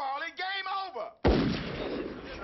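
A man's voice speaking, cut off just over a second in by a single loud gunshot that rings on in a long, echoing tail.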